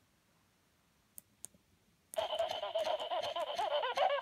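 Gemmy 'Buster the Shameless' animatronic talking monkey toy: about two seconds of near silence broken by a couple of faint clicks, then its small speaker starts a tinny, pitched voice sound that carries on.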